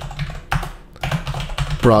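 Computer keyboard typing: an uneven run of keystrokes as code is entered.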